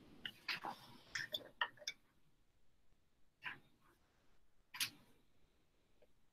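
Faint, scattered clicks and small knocks: a quick cluster in the first two seconds, then two single clicks about three and a half and five seconds in.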